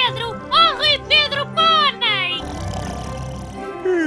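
Four short, high, sing-song calls, each rising and falling, then a low rasping snore from the sleeping old man in the last second and a half.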